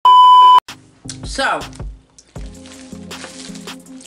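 A loud, steady electronic beep of one pitch, about half a second long, at the very start. It is followed by quieter sliding voice-like sounds and a low steady drone.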